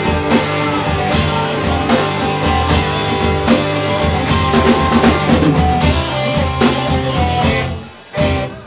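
Rock band playing live, an instrumental stretch of guitars over a steady drum kit beat. The full band cuts off sharply near the end.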